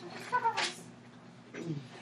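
A short, high-pitched voice sound, falling slightly in pitch, about half a second in. Quiet room noise and a faint murmur follow.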